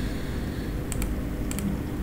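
A few computer-keyboard keystrokes: two quick clicks about a second in and two more half a second later, over a steady low background hum.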